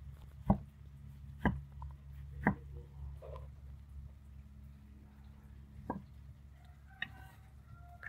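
Knife slicing a tomato thin on a wooden chopping board: the blade knocks on the board three times about a second apart, then once more near six seconds, over a steady low hum.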